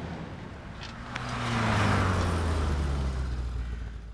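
A car engine approaching and pulling up, growing louder from about a second in, then running steadily.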